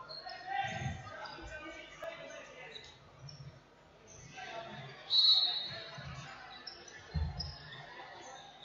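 Indoor football on a sports-hall floor: the ball thuds as it is kicked and bounced, about a second in and again near the end, amid short high squeaks of players' shoes and a louder, shrill high squeal about five seconds in, all ringing in the large hall.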